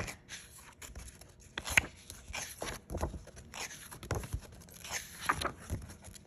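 Book pages being turned and handled: a series of short, irregular paper rustles and scrapes, with a sharp click a little under two seconds in.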